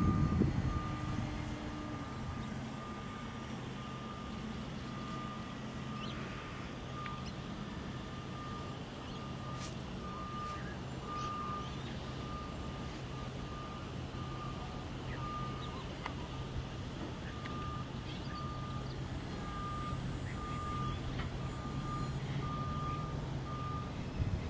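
An electronic beeper sounding one steady high tone, repeated evenly a little over once a second, over a low steady hum.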